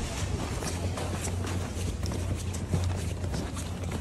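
Footsteps crunching on packed snow: a run of irregular short crunches over a steady low rumble.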